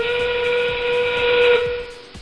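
FRC field's endgame warning sound played over the arena PA: a recorded steam-train whistle, one long steady whistle with hiss, marking 30 seconds left in the match. It fades away near the end, with the arena's dance music beat continuing faintly underneath.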